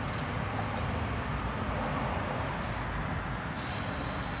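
Steady low background rumble and hiss, with no distinct events.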